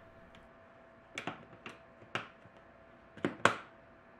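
Snap-lock clip latches on a clear plastic tub lid being pressed shut by hand: five sharp plastic clicks, the last two close together.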